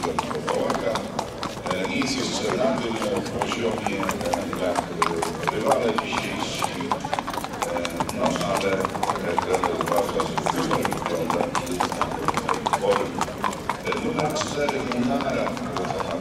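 Racehorses walking on a hard path, their hooves clip-clopping in a quick, irregular patter, over a background of people talking.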